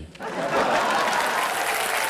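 Studio audience applauding, with laughter mixed in, starting a moment after the talking stops.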